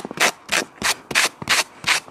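Snow being swept off a car's side window in quick back-and-forth strokes, about three a second: a rhythmic rubbing and brushing of snow against the glass.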